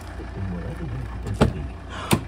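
A radio advert voice playing faintly, over a steady low hum, with one sharp click about one and a half seconds in.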